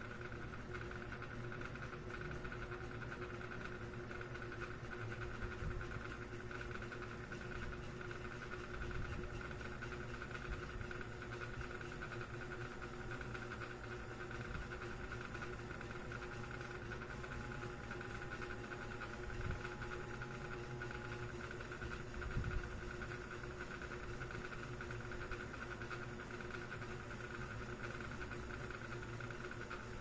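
Steady room hum and hiss, with a few soft low thumps scattered through it.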